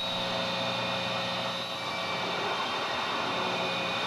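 Steady hiss with a faint, even hum of steady tones underneath.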